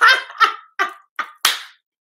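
A woman laughing in a run of about five short, breathy bursts.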